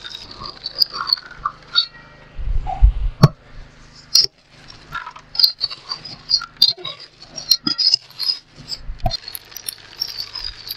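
Electric cement mixer running, its drum tumbling a dry sand-and-cement mix, with gravel rattling and knocking against the drum. A shovel pushed into the drum knocks and scrapes against it, with a heavy thud about three seconds in. A few short rising-and-falling calls sound over it.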